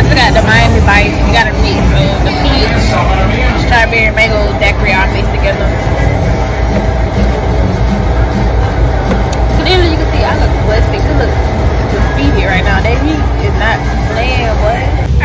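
Busy restaurant room sound: a steady low rumble with people's voices chattering underneath, the talk heaviest in the first few seconds and again near the end.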